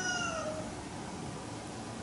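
The end of a long animal call, falling in pitch and stopping about half a second in, followed by faint steady background hiss.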